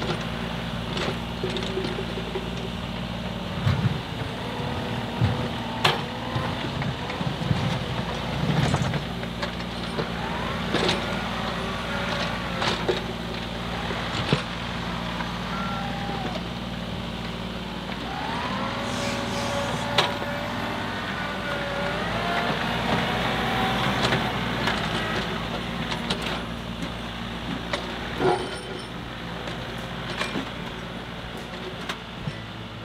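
A Kubota U35 mini excavator and a John Deere compact tractor running at work together, their diesel engines making a steady drone. Sharp knocks recur throughout, and sliding whines rise and fall in the middle of the stretch.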